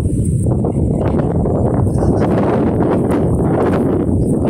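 Wind buffeting the phone's microphone: a loud, steady low rumble.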